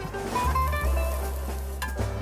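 A crêpe sizzling in a hot frying pan, the hiss stopping near the end, over background jazz music.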